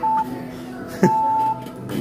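Quiz game exhibit's electronic timer beeping: a short beep, then a longer beep about a second later with a click as it starts. This is the end of a once-a-second countdown, signalling that the answer time has run out.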